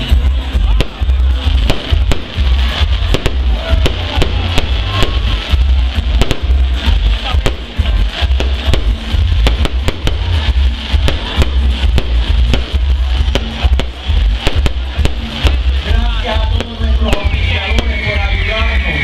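Fireworks crackling and popping in many quick, irregular bangs, over loud music with a heavy bass beat.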